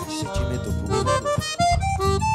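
Forró band playing an instrumental passage: a quick stepping accordion melody over bass and drums.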